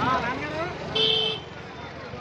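A vehicle horn gives one short toot about a second in, over people's voices and street traffic.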